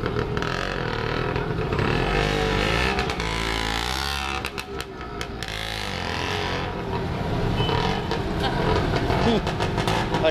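Busy street traffic with motor rickshaw engines running close by. One rickshaw passes near the middle, its engine note bending up and down in pitch as it goes by.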